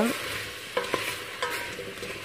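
Diced apples sizzling in melted butter and sugar in a saucepan, stirred with a wooden spatula. The spatula scrapes against the pan a few times.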